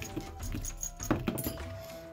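A handful of small metal charms and trinkets cast down onto a paper sheet, landing with a few light clicks and clinks, the sharpest about a second in. Quiet background music with a held note runs underneath.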